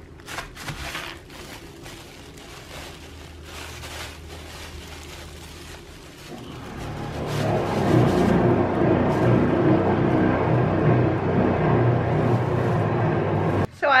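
Plastic bag and tissue paper crinkling and rustling in a cardboard box as a cat moves around in it. About halfway through, background music comes in loudly and runs until it cuts off just before the end.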